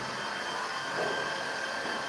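Steady room noise: a constant hiss with a faint high, even whine running through it.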